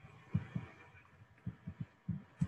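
Faint, irregular soft thuds, about eight in two seconds, under a light hiss.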